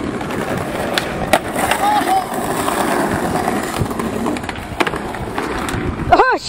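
Skateboard wheels rolling over stone paving slabs, a steady rough rumble, with a few sharp clacks from the board about a second in, again shortly after, and near the end.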